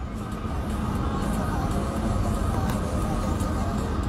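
Steady low rumble of a car heard from inside its cabin, with engine and traffic noise and no sudden events.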